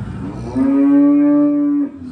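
A zebu cow mooing once: one long, loud low that swells up and holds steady for a little over a second, then cuts off suddenly.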